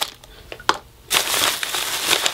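Thin plastic carry-out bag rustling and crinkling as a hand digs through it: a few light clicks at first, then louder continuous rustling from about a second in.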